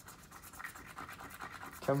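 A coin scratching the coating off a paper scratch-off lottery ticket: faint, quick rasping strokes that get a little louder toward the end.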